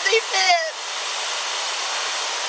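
A steady, even rushing noise with no rhythm or pitch, after a few spoken words at the start.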